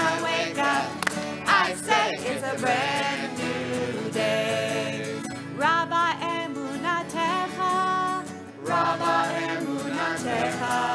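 A group of voices singing a folk-style song, accompanied by two strummed acoustic guitars.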